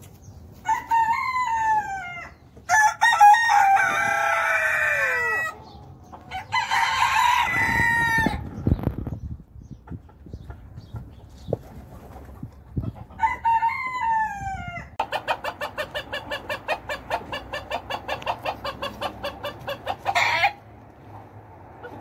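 Loud bird calls: several drawn-out calls that fall in pitch in the first half, another about 13 seconds in, then a fast rhythmic run of short calls lasting about five seconds.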